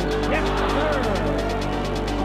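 Background music with a steady, fast beat and a voice or melody sliding in pitch over it.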